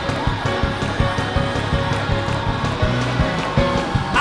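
Up-tempo gospel praise music from a church band, with a fast, steady drum beat and a bass line under it.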